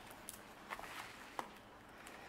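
Faint rustling and a few light ticks of paper dollar bills being handled and tucked away.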